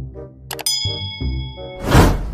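Subscribe-button animation sound effects over background music: a sharp click about half a second in, then a bell ding that rings for about a second, then a rising whoosh near the end.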